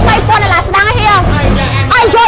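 A woman talking continuously over a low, steady rumble.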